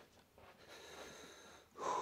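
Faint breathing close to the microphone, a drawn breath lasting about a second, then a louder vocal sound near the end as the voice starts up.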